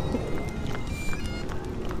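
Footsteps on a wet paved path, with music playing in the background.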